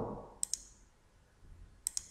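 Computer mouse button clicks: a pair of quick clicks about half a second in and another pair near the end, with faint room tone between.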